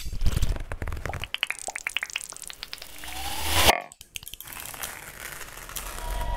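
Acousmatic electroacoustic music made of processed recorded sounds: dense crackling and rapid clicking that swells with a rising glide to a loud peak and then cuts off abruptly, a little over halfway through. A thinner, quieter crackling texture follows.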